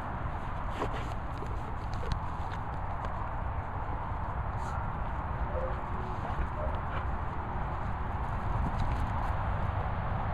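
Footsteps on grass and rustling handling noise from a hand-held camera being carried, over a steady low rumble of wind on the microphone, with a few soft clicks.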